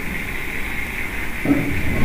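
A steady high hiss in the background over a low rumble, during a pause in speech.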